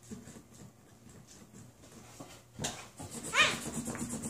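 A quiet stretch with faint small taps and rustles, then, just past three seconds in, a child's voice giving a short, high, wavering vocal sound.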